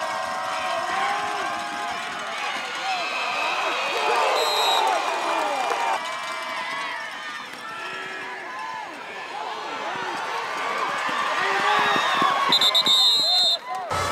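Crowd at a high school football game: many voices shouting and cheering at once through a play. Short, high referee's whistle blasts cut through about four seconds in and again near the end.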